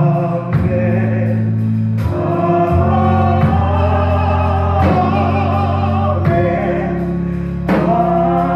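Gospel music during worship: voices singing over a band, with held bass chords that change every second or two and a steady cymbal tick.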